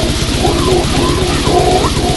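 Thrash/death metal band recording in an instrumental passage: distorted guitar riffing over rapid, steady drumming.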